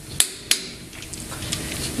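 Two sharp knocks about a third of a second apart, then faint steady workshop background noise.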